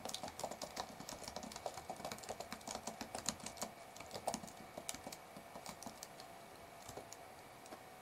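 Typing on a computer keyboard: a quick run of faint key clicks for about the first five seconds, then only a few scattered clicks.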